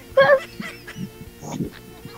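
A short honking, goose-like burst of laughter from a man, loudest about a quarter of a second in, with faint background music under it.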